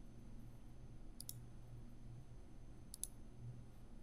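Two computer mouse clicks, each a quick double tick, the first about a second in and the second about three seconds in. A faint steady low hum runs underneath.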